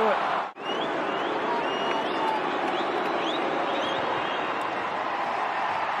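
Large football stadium crowd: a steady din of many voices, with a few short rising whistles above it. The sound drops out briefly about half a second in.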